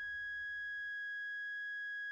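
A steady, high-pitched electronic tone: one pure note held unchanged, with faint higher overtones.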